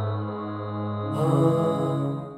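Background music: slow, held chords over a steady low drone. About a second in, a new chord enters with a high shimmering swell.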